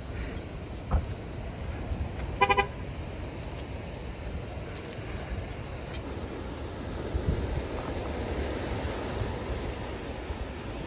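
Steady wind and ocean surf noise, with a knock about a second in and a short, pulsed car-horn toot about two and a half seconds in.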